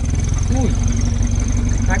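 Volkswagen Gol's engine running steadily while the car drives, heard from inside the cabin, with a thin high whine over it.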